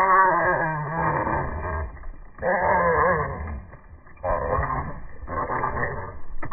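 Red squirrels fighting, giving repeated low, wavering growling calls in about four bursts.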